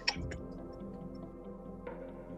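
Quiet background music with sustained tones and a soft, regular ticking beat.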